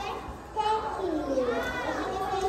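Speech only: a small child's high-pitched voice talking, with words the recogniser could not make out.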